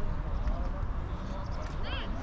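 Buffeting rumble of wind on the microphone at an outdoor youth football pitch, with distant shouts of young players. One high shout rises and falls near the end.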